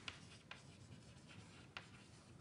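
Chalk writing on a blackboard, faint: a few short taps and scratches of the chalk strokes.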